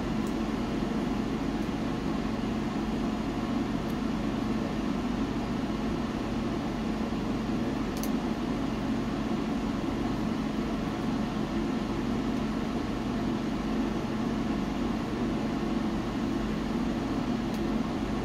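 Wood-burning stove running with a steady whirring hum and a low drone, with a couple of faint ticks.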